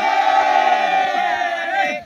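A group of men's voices raised together in a loud, sustained chant with held notes, fading out near the end.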